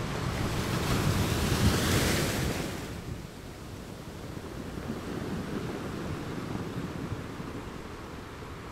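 Ocean surf breaking on a beach: a big wave crashes and washes in, loudest about two seconds in and falling away by three seconds, then a smaller, lower rush of surf follows.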